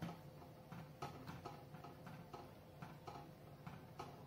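Metal spoon stirring dal in a clay handi, with about a dozen faint, irregular clicks as it knocks and scrapes against the pot.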